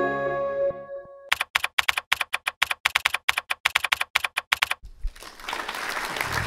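Intro music fades out in the first second. Then comes a run of rapid, sharp clicks, about eight a second, like typing on a keyboard, lasting about three and a half seconds. Faint room hiss follows.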